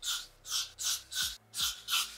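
Aerosol can of got2b freeze hairspray sprayed in quick short bursts, about six hisses in two seconds, onto a wig cap's hairline to glue it down.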